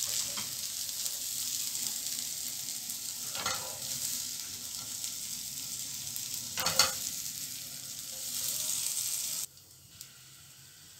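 Sausage slices and bell peppers sizzling in a hot frying pan while a slotted spatula scrapes them out of the pan, with louder scrapes about three and a half and seven seconds in. The sizzling cuts off suddenly near the end.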